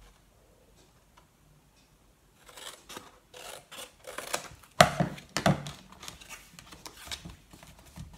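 Scissors snipping through teal cardstock to cut off the corner of an album cover, a run of short cuts and paper rustles starting about two and a half seconds in, the loudest about five seconds in.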